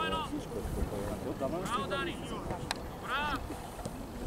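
Several high-pitched shouts from young footballers on the pitch, over wind rumbling on the microphone. A single sharp knock comes a little past two-thirds of the way through.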